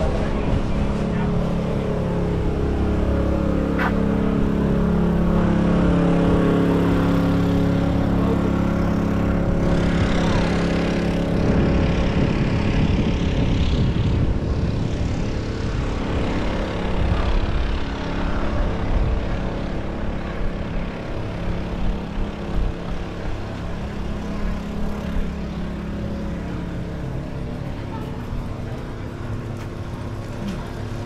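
A motor vehicle's engine runs close by on the street, its pitch slowly falling over the first ten seconds or so. A wider rush of passing-traffic noise follows, then a lower, uneven street din.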